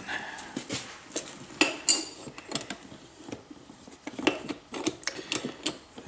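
Steel tire levers clicking, knocking and scraping against a spoked motorcycle wheel rim as a stiff tire bead is worked over the rim in small bites. The knocks are irregular, with a couple of short metallic clinks that ring briefly about two seconds in.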